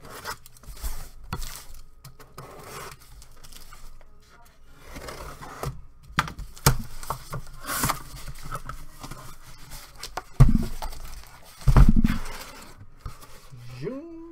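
A cardboard case of trading-card hobby boxes being opened: scraping, cutting and tearing of the tape and cardboard. Near the end come two heavy thumps as the case is flipped and lifted off the boxes inside.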